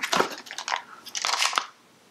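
Plastic candy cups and box packing being handled: a run of irregular crackly rustles and knocks, stopping shortly before the end.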